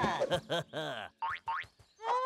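Cartoon sound effects and wordless character vocalisations: a quick run of springy, boing-like pitched sounds that bend up and down, then two short, fast upward-sliding zips about midway through.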